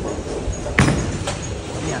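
One heavy knock of a bowling ball about a second in, over the background noise of a bowling alley and voices.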